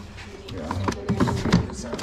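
Wooden picture frames clacking against one another a few times as a hand sorts through them in a plastic tote, under background conversation.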